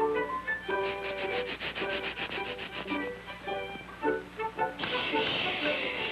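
1930s cartoon orchestral score, with a fast, even run of toothbrush-scrubbing strokes about a second in. A short hissing rush comes near the end.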